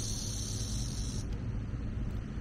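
Outdoor ambience: a steady low rumble with a high, even insect buzz that cuts off a little over a second in.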